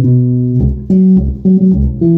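Electric bass guitar playing a sebene bass line over a 1–5–4–5 progression in the key of B: a run of plucked notes, each held briefly before the next, with a few deep low thumps among them.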